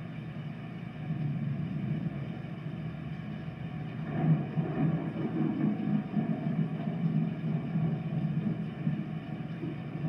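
Thunderstorm recording played back over a speaker: a steady low rumble of thunder that swells about four seconds in and stays heavier to the end.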